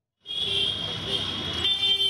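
Street traffic noise with a vehicle horn held, starting a moment in, its tone shifting about one and a half seconds in.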